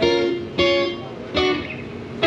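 Acoustic guitar strings plucked three times, each note ringing out and fading before the next.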